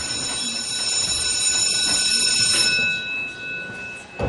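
An electronic alarm-like buzzer tone: a steady, high-pitched buzz of several tones at once, held for about three seconds and then fading.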